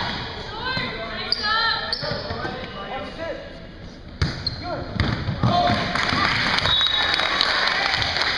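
A volleyball struck hard by a player's hand about four seconds in, a sharp slap that rings in the gym, with a second ball hit about a second later, among players' shouts.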